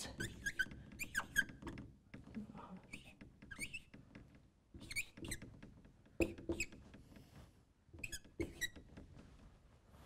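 Dry-erase marker squeaking on a whiteboard as numbers are written, a few short high squeaks at a time with gaps between the strokes.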